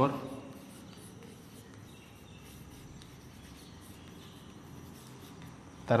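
Chalk writing on a blackboard: faint scratching strokes as a word is written out.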